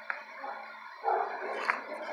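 A dog barking in short loud bursts, starting about a second in.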